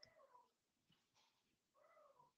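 Near silence, with faint, short whining calls from an animal, one at the start and one near the end, and a few faint ticks between them.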